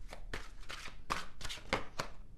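A deck of tarot cards being shuffled by hand: a run of short, sharp card strikes, about three a second.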